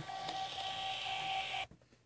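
Star portable Bluetooth thermal receipt printer running as it feeds and prints a receipt with a QR code: a steady mechanical sound with one constant tone, cutting off suddenly about one and a half seconds in as the print finishes.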